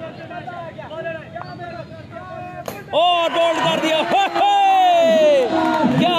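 Crowd babble, then a single sharp crack of a bat hitting a tape ball about two and a half seconds in. Loud, excited commentary follows it over the crowd.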